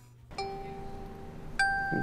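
Two struck chime notes, bell-like: the first rings out and fades slowly, and a second, an octave higher, sounds near the end. They mark a scene change in the show.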